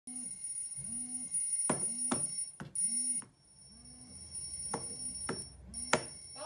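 Smartphone alarm ringing: a short rising tone repeating about every 0.7 seconds over a steady high tone. A few sharp clicks come through it, the loudest near the end.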